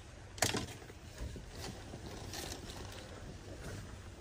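Soft rustling of a new cotton quilt being handled, shaken out and pulled over, with a sharp click about half a second in.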